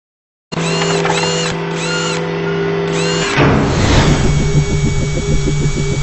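Logo-intro sound effect, starting about half a second in: a steady mechanical whirring with a repeating high squeal about twice a second, then a whoosh at about three and a half seconds leading into a fast, even mechanical pulsing.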